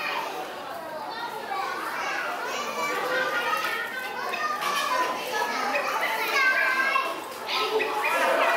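Children's voices chattering and calling out, with other people talking among them.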